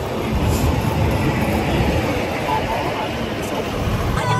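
Steady rumble of wind and road noise from riding in a moving open-sided passenger cart, with air buffeting the microphone.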